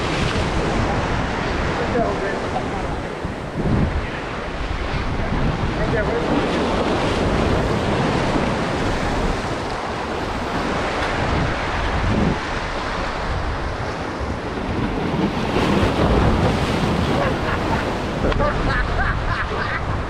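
Ocean waves breaking and washing over the boulders of a rock jetty, a steady surf that swells and eases, with wind buffeting the microphone.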